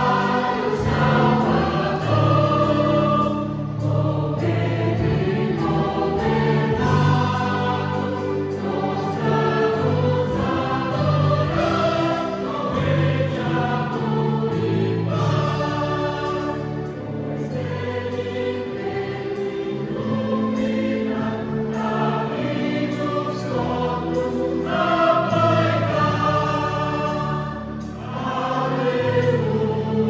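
Mixed choir of men and women singing in sustained chords over a steady low line, with a brief dip in loudness near the end.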